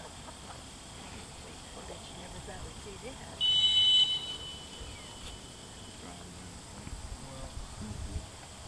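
A single blast on a retriever handler's dog whistle: one high, steady tone lasting under a second, about three and a half seconds in. It is the stop whistle, telling the running retriever to sit and look back for a hand signal during a blind retrieve.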